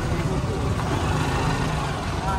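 Steady low rumble of outdoor background noise, with faint voices.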